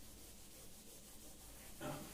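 Cloth duster wiping chalk off a chalkboard: faint rubbing strokes of fabric across the board, with a brief louder sound near the end.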